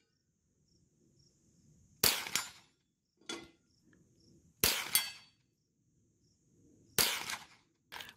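.22 rifle fired three times, about two and a half seconds apart. Each sharp crack is followed about a third of a second later by a second, fainter report, and there is a smaller click between the first two shots. A faint, steady insect chirring runs underneath.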